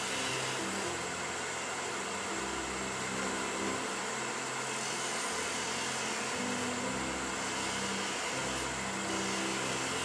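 Wood lathe spinning a small spindle blank while a hand-held turning tool cuts it, a steady hiss of cutting and machine noise.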